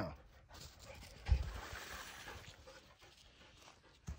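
A dull thump about a second in, followed by a dog's faint panting.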